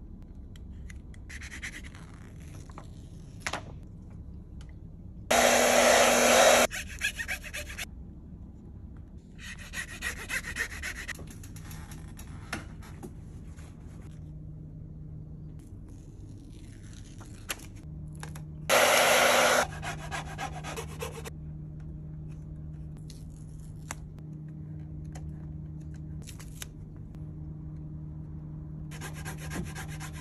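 Adhesive frame-protection film being fitted to a mountain bike frame: on and off scratchy rubbing of a felt-edged squeegee pressing the film down, and the rustle of backing paper being peeled. Twice, about five seconds in and again near the middle, a short, much louder burst of rushing noise.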